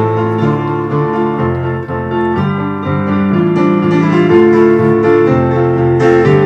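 Electric piano keyboard playing held chords that change every second or so.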